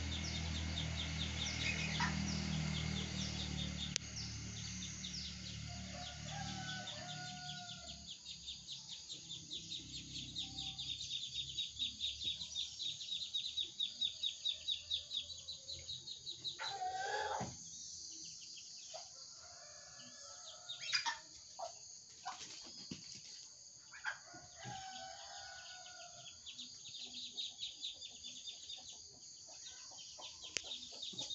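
Chickens clucking, with a rooster crowing, over a rapid high chirping that is steady through the first half; a low hum fades out over the first few seconds.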